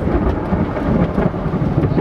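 Steady low rumbling noise inside a vehicle cab that is still in gear with the engine running.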